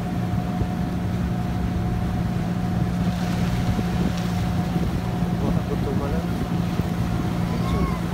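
Engine of a motorized outrigger boat (bangka) running steadily under way: a constant low drone with a steady hum.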